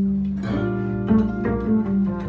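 Archtop electric jazz guitar and pizzicato double bass playing together, the guitar striking chords about half a second in and again about a second in over a held low note.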